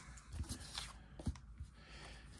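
Faint handling of cardboard trading cards: a few soft ticks and rustles as a stack of cards is set down on the table.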